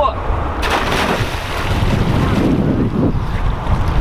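A person diving off a low wooden dock into lake water: one sudden splash about half a second in, then the water settling. Wind rumbles on the microphone throughout.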